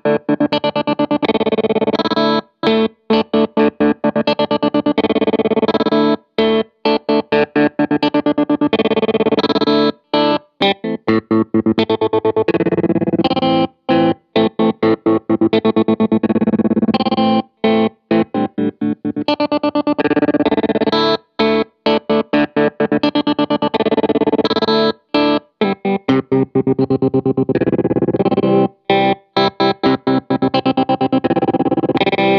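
Electric guitar chords played through a Lightfoot Labs Goatkeeper 3 analog tremolo/sequencer pedal. The sound is chopped on and off abruptly in a stuttering rhythmic pattern, with short silent gaps between held chord pulses.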